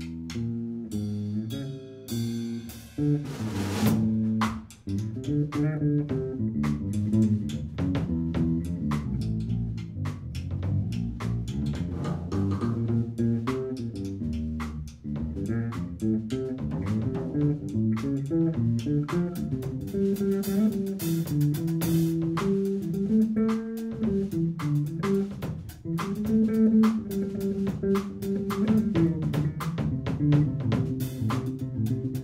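Live instrumental jazz: an electric bass guitar plays a moving line of notes over a drum kit.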